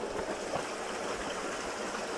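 A stream running over rocks: a steady, even rush of water, with a few faint ticks.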